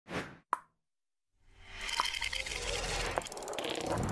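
Logo-animation sound effects: a brief soft sound, then a sharp pop about half a second in. After a second of silence comes a building, shimmering swell with a couple of small pings.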